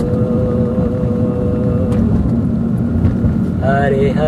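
Kirtan music between chanted lines: a single held note for about the first two seconds, over a dense, steady low accompaniment that carries on throughout.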